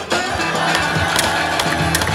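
Skateboard wheels rolling on the concrete of a skate bowl, with a few sharp clacks, under backing music.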